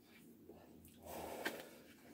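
A faint, soft breath from a man smoking a cigarette, about a second in, as he draws on or blows out the smoke, with a small click near its end.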